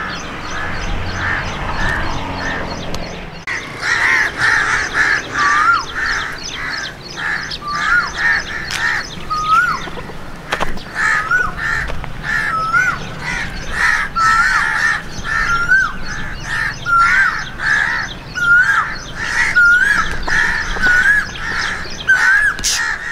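Crows cawing over and over, about two harsh calls a second, getting louder about three and a half seconds in. A short clear rising note repeats roughly once a second alongside them.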